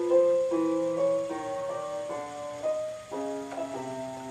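Piano playing slow two-hand note steps, a new note roughly every half second, the upper line climbing and the lower line sinking so that the hands move apart one note at a time: crawling through every note of the chromatic scale.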